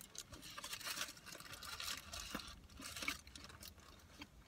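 Faint, irregular chewing of a mouthful of burrito.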